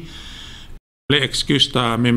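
A man's audible in-breath between phrases into a close studio microphone, followed by a brief dropout to dead silence, after which he goes on talking.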